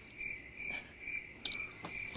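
A cricket chirping in a steady, high, pulsing rhythm, with a couple of faint clicks in the second half.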